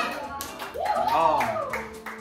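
A few scattered hand claps and a person's voice calling out in one drawn-out rise-and-fall near the middle, among people at a party.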